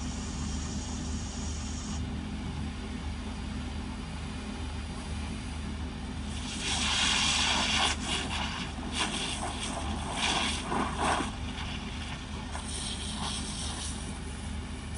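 An engine runs steadily under a fire hose's water jet, which hisses in several loud surges between about six and eleven seconds in as it is played over smouldering burnt stubble, with a fainter hiss near the end.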